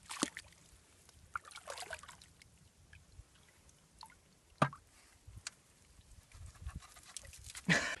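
Wet clay and mud being scooped and handled in shallow water: small sloshes, squelches and drips, with a sharp click about halfway through.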